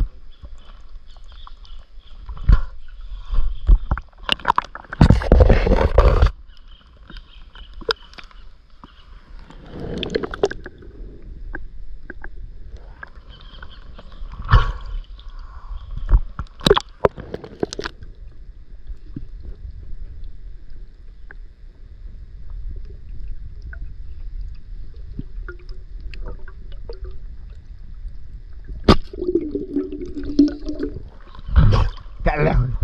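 River water sloshing and gurgling close to the microphone as it dips in and out of the surface, with a few sharp knocks and a loud splashy burst about five seconds in.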